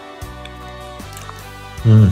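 Background music with steady held tones; just before the end, a short loud vocal sound from a man.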